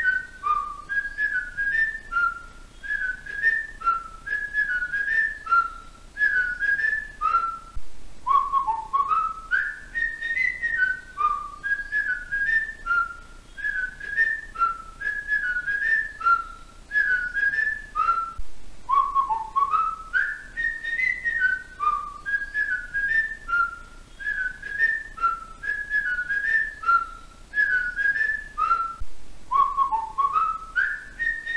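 Background music led by a whistled melody: a short tune of sliding notes that repeats about every ten seconds, with faint light clicks behind it.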